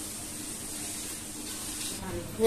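Steady hiss of food frying in hot oil in a kadai on a gas stove.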